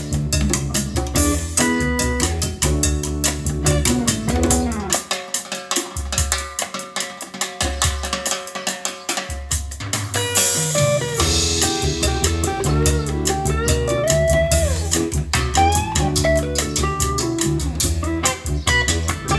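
Music with guitar, bass and drums playing through a pair of Audioflex AX-1000 floor-standing speakers. About five seconds in, the bass and drums drop away for a few seconds, then return with a crash near ten seconds.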